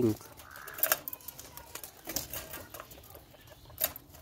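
Caged quails calling softly, with a short chirp about half a second in, and two sharp clicks, about a second in and near the end.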